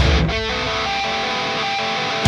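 Instrumental heavy metal passage with electric guitars. A heavy low accent from the bass and drums dies away about a third of a second in, and a chord rings on steadily after it.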